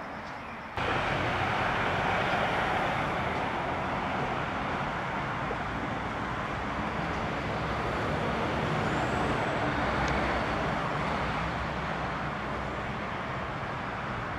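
Steady road-traffic noise, a continuous rush of passing vehicles that cuts in suddenly about a second in and swells and eases slowly. A faint, short, high chirp comes about nine seconds in.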